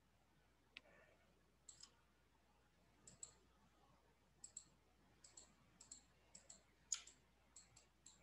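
Faint computer mouse clicks, about fifteen scattered through near silence, several in quick pairs, the loudest one near the end.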